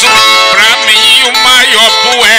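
Repente cantoria music: plucked viola, the steel-strung guitar of the Northeastern Brazilian violeiros, playing steadily with wavering, sliding notes.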